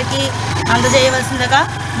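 A woman speaking in Telugu, with a steady low engine hum underneath.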